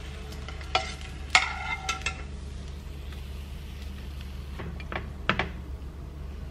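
Metal spatula knocking and scraping against the pan and plate as fried eggs are lifted and laid on bagel halves: a few sharp metallic clinks in the first two seconds and two more near the end, over a low steady hum.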